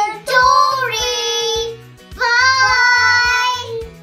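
Children's voices calling out two long, drawn-out sung notes over background music with a steady beat.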